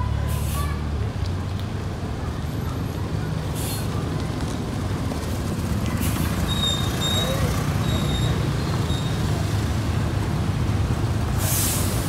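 Coach bus engine running at low speed as it pulls slowly past, with several short hisses of air from its brakes, the loudest near the end.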